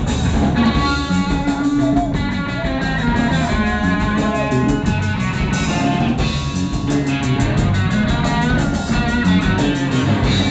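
A live band playing a reggae song, with electric guitar over bass and drum kit at a steady beat.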